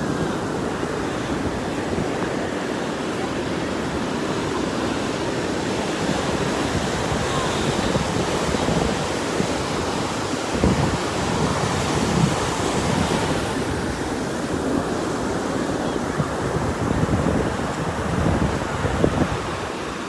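Ocean surf washing through shallow water in a steady rush, with foam fizzing. Gusts of wind buffet the phone's microphone, louder a few times in the second half.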